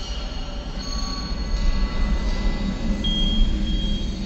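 Sound-design intro of an atmospheric drum and bass track: a deep low rumble overlaid with several thin, high, steady metallic squealing tones, like train wheels screeching. A brighter high squeal enters about three seconds in.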